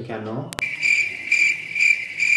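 Cricket chirping sound effect: a steady high chirp that swells about twice a second, coming in suddenly about half a second in, after a short spoken word. It is the comic 'awkward silence' cue.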